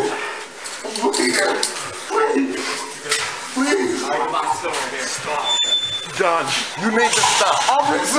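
Indistinct men's voices talking throughout, with a single sharp metallic click or clank about five and a half seconds in.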